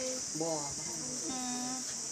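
A steady, high-pitched chorus of insects chirring without a break, with a person's voice sounding a couple of drawn-out syllables over it.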